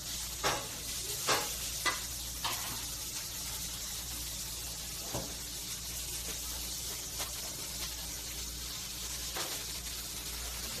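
Food sizzling steadily in a hot frying pan, with a few sharp knocks of pan or utensils, most of them in the first couple of seconds.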